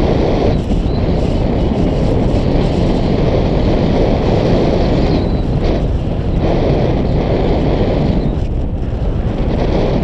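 Wind rushing over a GoPro action camera's microphone in paragliding flight: a loud, steady, low rumble of wind noise.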